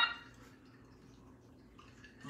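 A pitched sound effect dies away in the first half second, then faint room tone.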